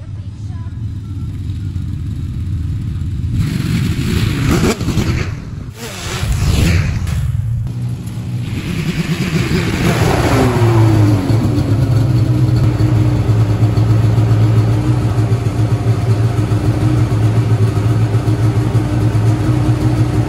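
Polaris RMK Pro snowmobile's two-stroke engine revving up and down several times, then dropping in pitch as the sled slows and settling into a steady idle for the second half.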